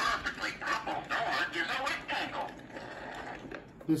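See 'n Say 'Colors & Shapes' talking toy playing its recorded voice through its small built-in speaker, thin and tinny with little low end.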